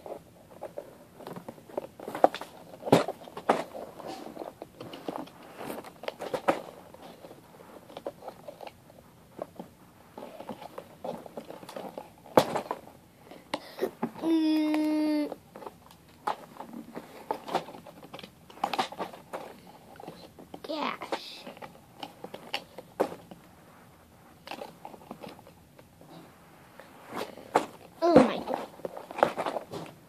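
A cardboard LEGO Hero Factory set box handled and pried at, giving many small clicks, crinkles and scrapes as its tape seal holds. About halfway through, a child's voice holds one note for about a second, and brief vocal sounds come later.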